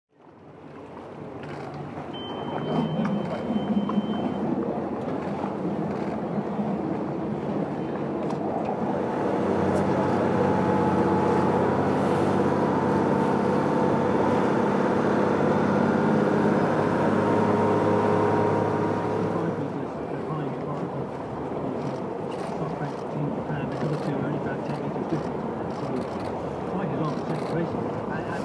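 Outboard motors on a rigid-hull chase boat run steadily, then give way to the water-and-wind rush of the boat under way. Crowd voices and a brief high tone are heard near the start.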